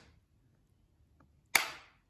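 Plastic case of a Nissan key fob giving one sharp click about one and a half seconds in, as a flathead screwdriver pries its seam: the click is the case's clip letting go, the sign that it is open enough to press apart.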